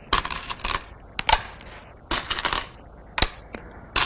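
Go stones clacking: stones rattling in a bowl as they are picked up and clicked down onto a wooden board, a scatter of sharp clicks, some single and some in short clusters.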